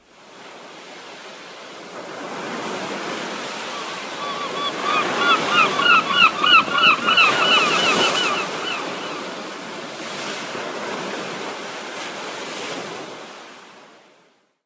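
Ocean surf washing steadily, swelling up about two seconds in. From about four to nine seconds in, a run of quick, repeated bird calls rises over it, the loudest part.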